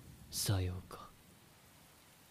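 A person's voice: one short, breathy, whisper-like utterance falling in pitch, about half a second in, then near silence.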